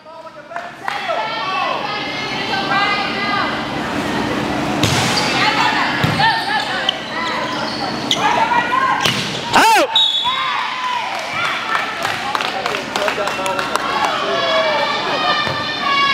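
A volleyball rally on an indoor court: the ball is struck several times with sharp slaps and thuds, the clearest a few seconds in and near the middle. Players' voices are calling and shouting all through, echoing in the gym.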